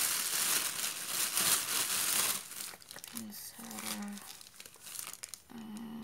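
Clear plastic and bubble-wrap packing crinkling as it is handled and pulled about in a cardboard box, loud for the first two seconds or so, then softer rustling.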